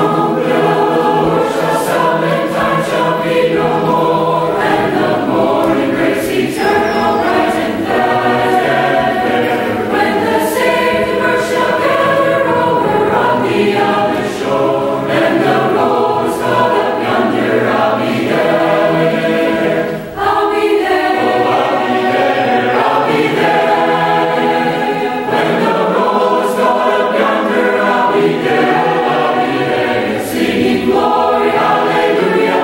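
Large mixed choir of men's and women's voices singing in parts, with a brief breath-pause about twenty seconds in.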